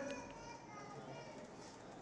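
A man's amplified voice breaks off right at the start, leaving faint background voices over low room tone.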